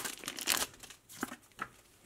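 Foil trading-card booster pack crinkling as it is torn open and handled. The crinkling dies away after about half a second, followed by two faint clicks.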